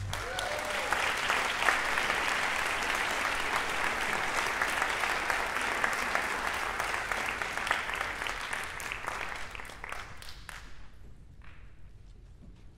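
Concert-hall audience applauding, the clapping thinning and dying away about ten seconds in.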